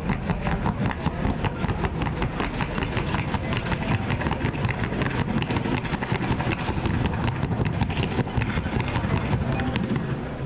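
Rapid, even hoofbeats of a Colombian Paso Fino horse in the four-beat trocha gait, struck on a wooden sounding board: a quick, steady drumming of hoof clicks.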